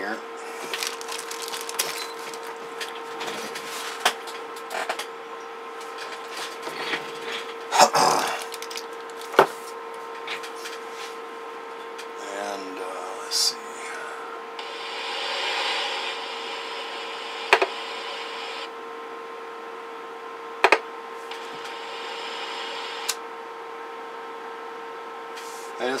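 A steady electronic tone from the radio test bench, with several sharp clicks as switches, knobs and connectors are handled. Near the middle there are two stretches of hiss lasting a few seconds each.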